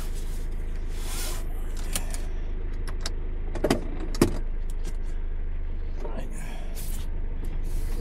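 Car engine idling, heard from inside the cabin as a steady low hum, with two short knocks a little past halfway.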